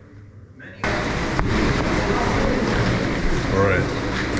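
Faint room tone, then about a second in an abrupt jump to a loud, steady rushing noise with people's voices talking in it.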